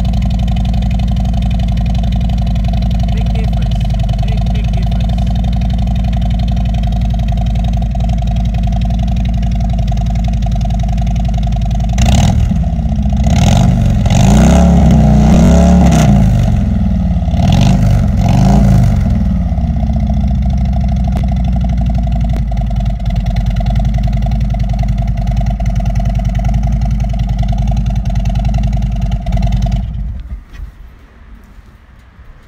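Harley-Davidson Tri Glide Ultra V-twin engine running through aftermarket Rush 4-inch exhaust pipes. It idles steadily, is revved several times between about 12 and 19 seconds, and then settles back to idle.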